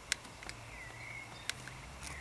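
Quiet outdoor background with a faint, short bird call a little after half a second in and a couple of small sharp clicks.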